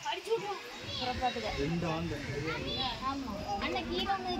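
Overlapping chatter of several voices, children among them, with no clear words.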